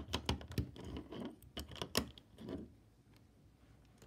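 Plastic LEGO bricks being handled and pressed together: a run of light clicks and taps that dies away less than three seconds in.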